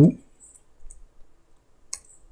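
A few sparse keystrokes on a computer keyboard, short separate clicks with the sharpest one near the end.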